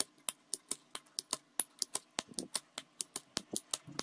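A fast, irregular run of sharp metallic clicks, about five a second, from a Flamidor Parisien petrol lighter: its lid snapping open and shut and its flint wheel striking.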